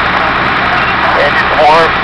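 Fire engines running at the fireground, a steady engine drone, with brief voices over it.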